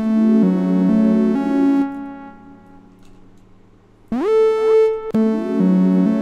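Software synthesizer chords from an Analog Lab V instrument, the notes sliding in pitch as they change. The chord stops about two seconds in and fades away. A single note swoops up about four seconds in, and the looped chords start again about five seconds in.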